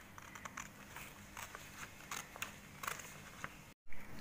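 Scissors cutting through a paper sheet: a string of faint, short snips and clicks as the blades close along the cut.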